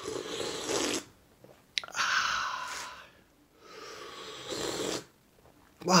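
A man slurping hot tea from a cup: three long, noisy slurps with short pauses between them.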